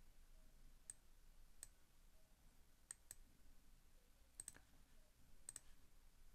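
Faint computer mouse clicks against near silence: scattered single clicks and two quick double clicks, about eight in all.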